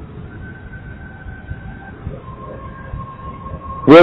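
A pause in a man's speech, filled only by a faint background hum and low noise with a faint steady whistle-like tone that shifts lower about halfway through. A man's voice resumes just before the end.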